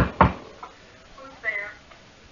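Two quick knuckle knocks on a hard surface, the "knock knock" of a knock-knock joke, followed about a second and a half in by a faint, brief voice.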